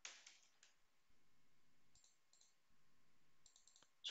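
Near silence, with a few faint clicks of a computer mouse and keyboard in small clusters at the start, about two seconds in, and near the end.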